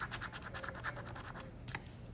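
A coin scratching the coating off an instant lottery scratch-off ticket: rapid back-and-forth strokes, about ten a second, that thin out and stop after about a second, then a single sharp tap.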